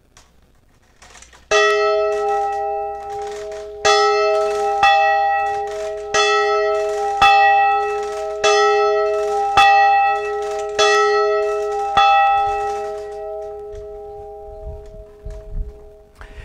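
A single church bell swung and struck by its clapper about once a second, some ten strikes, each ringing on into the next; after the last strike, about twelve seconds in, the tone dies away. It is rung to mark the start of a church service.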